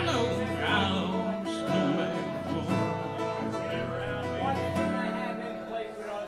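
Electric guitar playing an instrumental passage of a blues song between sung lines, amplified through a PA in a bar room.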